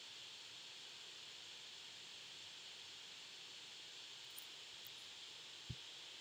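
Near silence: a steady faint hiss of room tone, with a few faint ticks about four to five seconds in and one soft low click just before the end.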